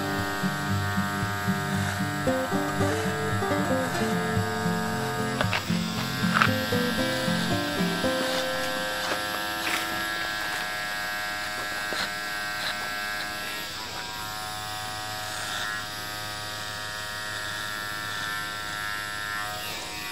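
Electric hair clippers buzzing steadily through a haircut, under background music with a changing melody. The music is busiest in the first eight seconds or so and thins out after.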